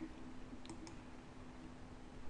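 Two faint computer mouse clicks in quick succession, about two-thirds of a second in, over a low steady hum.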